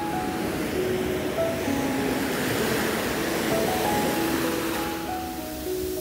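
Ocean surf washing up a sandy beach, a steady rush of water that eases near the end, under slow piano music.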